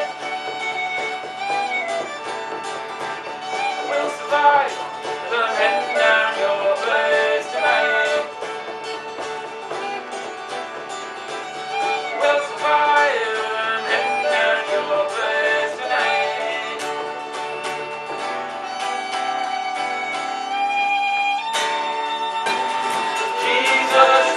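Live acoustic folk music: a bowed string instrument plays an ornamented, gliding melody over frame drum and acoustic guitar, holding one long note near the end.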